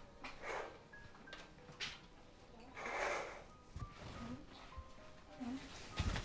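Soft background film music of sparse, held single notes, with a few brief rustling swishes; the loudest swish comes about three seconds in.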